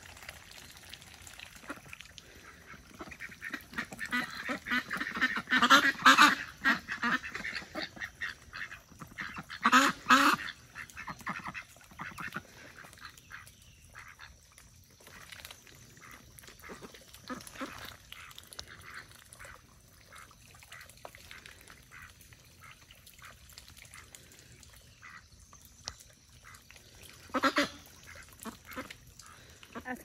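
White domestic ducks quacking on and off. The loudest bouts come several seconds in, around ten seconds, and near the end, with softer quacks between.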